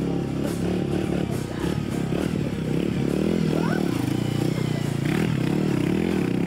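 Small motorcycle engine running as the bike rides up and slows to a stop, its pitch rising and falling with the throttle.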